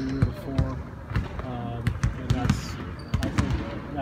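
Basketballs bouncing on a court: an irregular run of sharp thuds, several a second, under voices talking.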